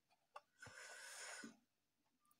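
A faint breathy exhale lasting under a second, just after a light click.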